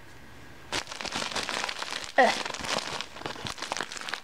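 Plastic mailer bag crinkling and rustling as it is handled, starting about a second in.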